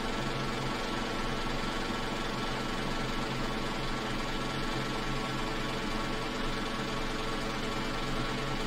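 A steady, unchanging hum made of several even tones over a faint hiss, like a small motor or electrical buzz.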